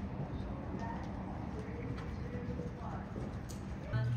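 Riding-arena ambience: horses' hooves on the sand footing, with distant, indistinct voices.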